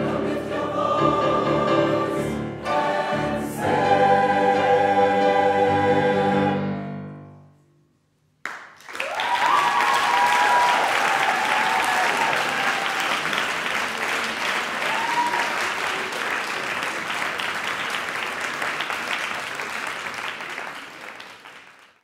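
A mixed youth choir with piano holds a final chord that dies away into silence about eight seconds in. The audience then breaks into applause with a few cheers, fading out near the end.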